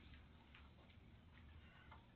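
Near silence: room tone with a steady low hum and a few faint ticks.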